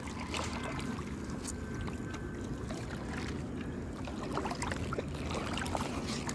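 Small fishing boat on the water at night: a steady low rumble and hiss, with scattered light clicks and knocks.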